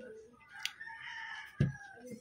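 A rooster crowing in the background: one drawn-out crow lasting about a second and a half, dropping in pitch at its end. A dull thump, the loudest sound, comes about a second and a half in, with a sharp click shortly before.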